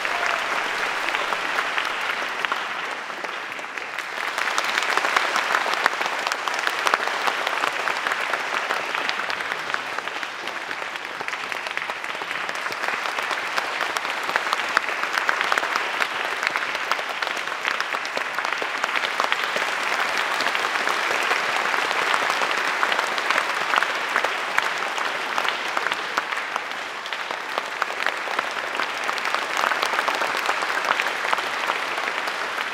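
Audience applause: dense, steady clapping that grows louder about five seconds in and keeps going.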